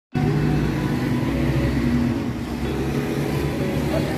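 Street traffic: car and motorbike engines running as they pass close by, a steady rumble throughout.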